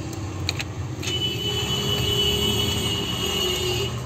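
A steady low mechanical hum with a thin high whine joining about a second in, and a couple of light clicks from fingers handling a phone's metal middle frame.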